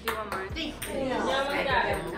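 Voices chatter in a room, with a light metallic ping or two as a small ball strikes a metal muffin tin.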